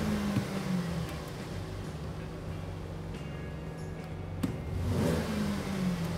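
Buick LaCrosse engine revved in park: it falls back from a rev at the start to idle, then climbs again in a second rev near the end. The blips to wide open throttle purge air out of the all-wheel-drive clutch oil pump.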